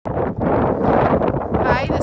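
Wind buffeting the microphone with a steady low rumble, and a voice starting near the end.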